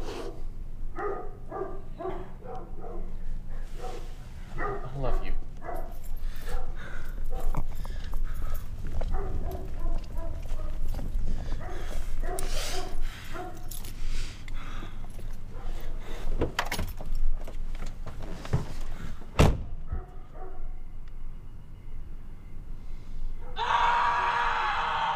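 Indistinct voices and movement over a low rumble, with several sharp knocks; the loudest is a single thunk like a car door shutting, about three-quarters of the way in. Music comes in just before the end.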